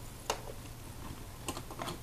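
A few light clicks and taps from multimeter test leads and probes being handled, one about a third of a second in and two close together near the end, over a faint steady low hum.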